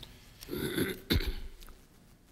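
A person clearing their throat close to a microphone: a noisy rasp about half a second in, then a sharper catch just after a second.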